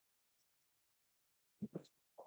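Near silence, broken about a second and a half in by two short, faint voice-like sounds.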